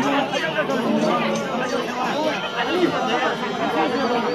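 Crowd chatter: many people talking at once in overlapping voices, close by.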